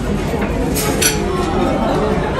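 A metal fork clinking against a ceramic gratin dish, a couple of sharp clinks about a second in, over steady cafe chatter.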